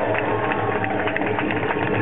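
Loud, dense crowd noise at a race finish line, with cheering and many sharp claps or noisemakers, over music with a pulsing bass beat played through a PA.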